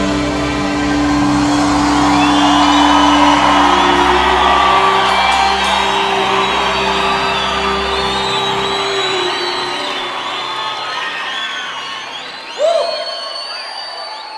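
A live band's final held chord ringing out under an audience cheering and whooping; the bass drops out about two-thirds of the way through. Near the end a single loud whoop rises out of the cheering, which then fades.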